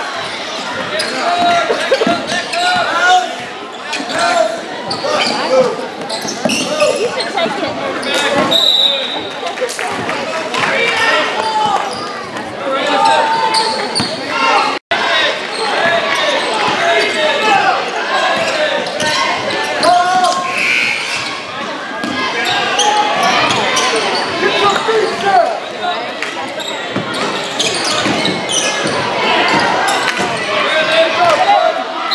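Basketball game in a gym: a ball dribbling on the hardwood court, with players and spectators talking and calling out, echoing in the hall. The sound drops out for an instant about halfway through.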